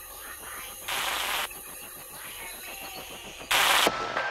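Glitchy electronic intro sound design: a rapid stuttering, clicking digital texture broken by two short bursts of static-like noise, one about a second in and a louder one near the end.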